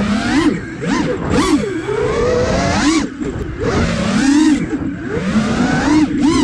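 iFlight Nazgul Evoque F5 five-inch FPV quadcopter's motors and propellers whining, the pitch swooping up and down every second or so with throttle changes, over low rushing wind noise.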